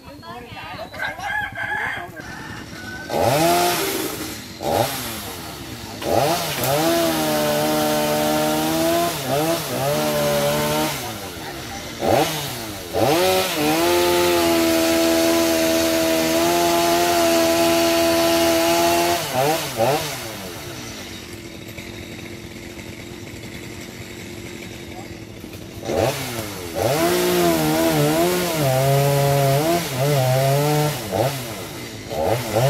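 Two-stroke chainsaw cutting eucalyptus limbs up in the tree, revving in bursts and held at full speed for several seconds in the middle. It drops to a low idle for a few seconds, then revs up again near the end.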